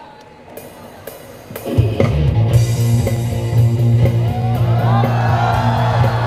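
Live rock band of electric guitar, bass guitar and drum kit kicking into a song about two seconds in, after a brief lull; from then on it plays loudly with a steady bass line.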